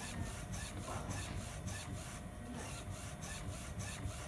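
UV flatbed printer running a print job, its print-head carriage shuttling over the bed with a rapid, regular hissing tick about three times a second and a brief lull a little after halfway.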